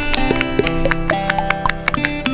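Quick run of pops from the silicone bubbles of a rainbow pop-it fidget toy being pressed in by fingers, several a second, over background music.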